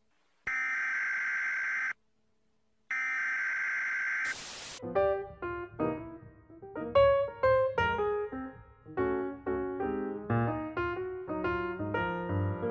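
A red-alert style alarm tone sounds twice, each blast about a second and a half long with a short silence between. About five seconds in, piano music begins, a run of separate notes.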